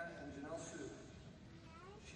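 A man speaking, his words indistinct.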